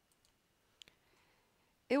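Near silence with a single faint click a little before the middle and a few fainter ticks near the start. A woman's voice begins at the very end.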